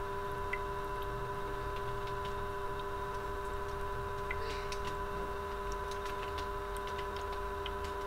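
Steady background hum made of a few constant tones, with a handful of faint, irregular ticks over it and no music.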